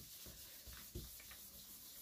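Faint rubbing of a round ink blending brush swept over cardstock, a few soft strokes.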